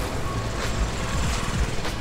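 Busy street ambience with a motorcycle engine running nearby, under quiet background music.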